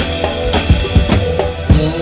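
Live rock band playing: a drum kit beat over held keyboard and bass notes, with djembe hand drumming close by.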